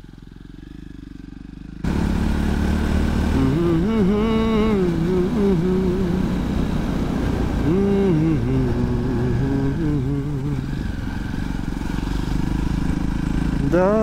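A man singing a slow melody with long, wavering held notes over the steady noise of a moving motorcycle and wind. The riding noise comes in abruptly about two seconds in.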